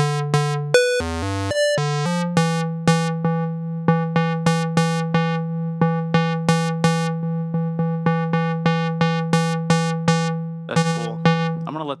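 Reaktor Blocks software synthesizer patch, a West Coast DWG oscillator through a low-pass gate, playing a repeated plucky note about three times a second over a steady low tone. A few quick notes of other pitches come about a second in, and near the end the tone turns rougher and sweeps in pitch.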